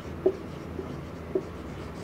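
Marker pen writing on a whiteboard: a few short strokes and faint squeaks as a word is written.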